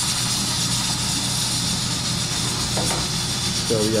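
Sliced garlic frying in hot oil in a skillet for a dal chunkay: a steady sizzle, with a steady low hum underneath.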